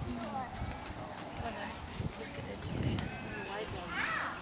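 Background chatter of several people's overlapping voices, none of it close or clear, with a few soft low thumps.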